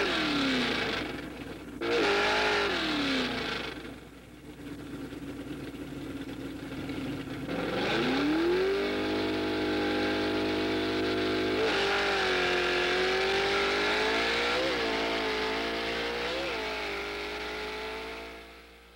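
Drag racing car engine revving. The note falls twice in the first few seconds, then climbs about eight seconds in and is held high and steady, with a few short throttle blips near the end.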